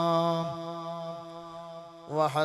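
A man's voice holding one long, steady note of melodic religious recitation. About half a second in the note dips in pitch and breaks off, then trails away fainter.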